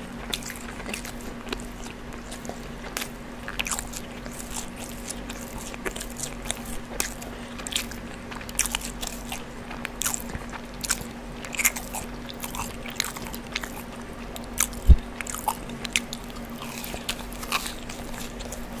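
Close-miked chewing of a mouthful of brisket sandwich: irregular soft mouth clicks throughout over a faint steady hum. One louder low thump comes about three-quarters of the way through.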